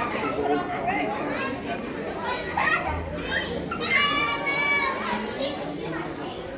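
Chatter and children's voices in a large hall, with one loud, high-pitched voice held for about a second near the middle.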